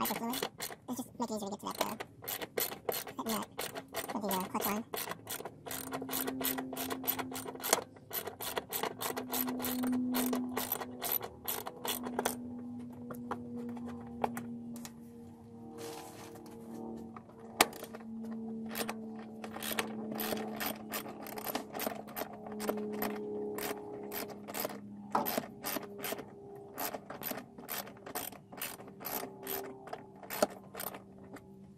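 Hand socket ratchet clicking in quick runs of strokes as a tight fastener is worked loose, over a faint steady hum.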